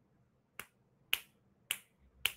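Finger snaps: three crisp snaps at a steady, unhurried beat, a little more than half a second apart.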